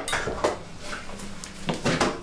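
Dishes and kitchenware being handled at a kitchen sink: several clinks and knocks of crockery, with two close together near the end.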